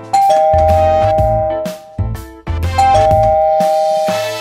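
Two-tone doorbell chime ringing twice, each time a ding-dong: a higher note followed by a lower one, both left to ring out. Background music plays underneath.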